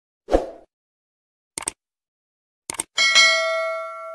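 Intro-animation sound effects: a short low thud, two brief clicks, then a bright bell-like ding about three seconds in that rings on and slowly fades.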